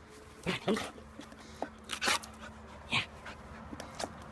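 A dog making a few short vocal sounds, about two seconds in and again about a second later, with a person laughing early on.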